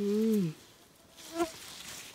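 A woman's short 'mmm' hum, held about half a second and falling in pitch at the end, followed by faint low-level noise.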